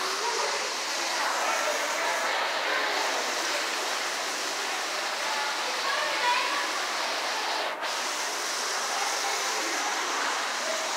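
Steady rushing noise of moving water in an aquarium tank's water system, with faint voices of people talking in the background.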